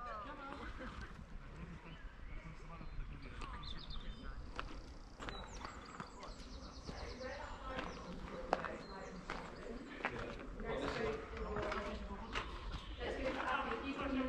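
Footsteps on a dirt path with faint voices of people talking some way off; the voices grow clearer near the end.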